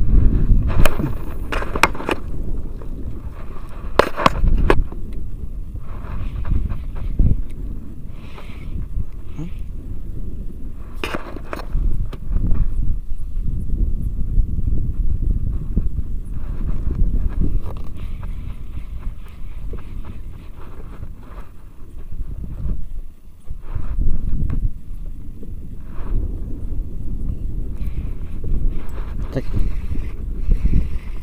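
Low rumbling wind noise on the microphone over a small wooden boat, with a few sharp clicks and knocks of a spinning rod and reel being handled as a lure is cast and retrieved.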